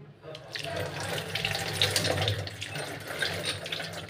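Kitchen tap running, its stream splashing over a mango held under it and into a stainless-steel sink as the mango is washed; the water starts a moment in and runs steadily.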